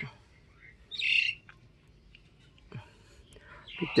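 A bird gives one short, high call about a second in. A few faint ticks follow near the end.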